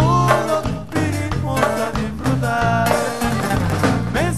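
Regional Mexican band music: a bass line stepping in a steady beat under a melodic lead, with no words heard.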